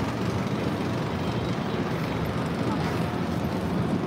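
Steady city street noise, mostly the even rumble of traffic, with no single sound standing out.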